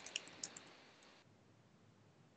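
A few faint clicks from the computer's input device in the first half second, then near silence.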